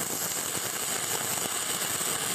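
Shielded metal arc welding with a 7018 electrode: the arc gives a steady crackling sizzle as the bead is run.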